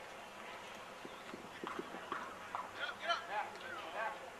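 Quick run of footfalls from cleats on artificial turf about a second in, as players sprint through a drill, then distant voices calling out.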